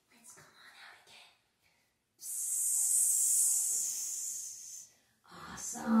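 A woman's drawn-out "sssss" hiss imitating a snake, lasting about three seconds from about two seconds in, after a few soft breathy sounds.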